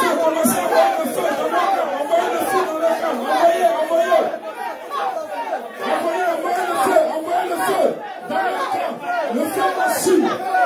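A group of people praying aloud at the same time, many voices overlapping in a continuous babble.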